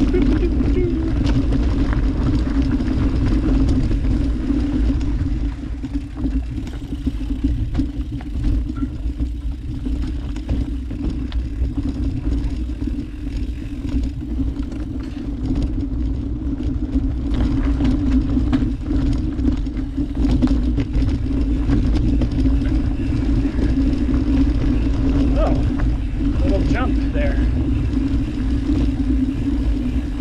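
Mountain bike riding down a dirt singletrack, heard from the bike: a steady rumble of wind and tyres on the trail under a constant buzzing hum, with many small rattles and knocks from the bike over roots and rocks.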